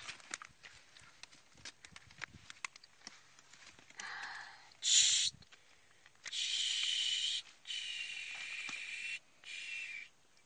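Faint clicks and rustles from a caught catfish being handled in a wet cloth over a net and bucket while it is unhooked, then several hissing stretches of about a second each, the loudest a short burst about five seconds in.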